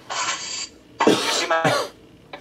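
A person coughing twice, about a second apart.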